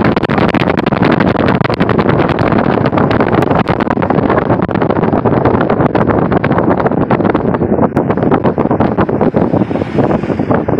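Wind buffeting the microphone of a phone filming from a moving car, a loud steady rush full of crackles, over the car's road noise.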